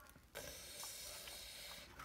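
A photo being slid out of a clear plastic pocket page, a soft, steady sliding hiss for about a second and a half.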